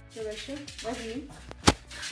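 A person's voice without clear words, then one sharp knock about one and a half seconds in, the loudest sound here.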